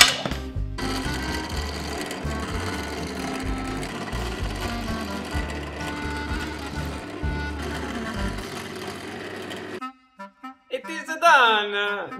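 A bench drill press running and drilling many small holes through a thin sheet-steel disc. The motor and cutting noise come and go as hole after hole is bored, then stop abruptly a couple of seconds before the end. A sharp knock sounds at the very start.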